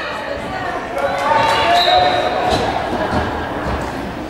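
Voices calling out in a reverberant gymnasium, with a few dull thuds.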